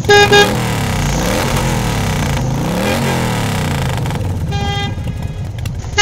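Vehicle horns honking over the steady noise of road traffic: a horn blast at the very start, another about four and a half seconds in, and a quick run of short toots near the end.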